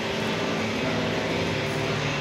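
A steady, low mechanical hum of unchanging pitch.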